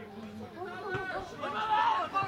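Several people talking and calling out at once, their voices overlapping and getting louder near the end.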